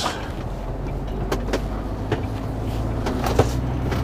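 HGV lorry's diesel engine running and road noise heard from inside the cab while driving, a steady low hum with a few light clicks and rattles.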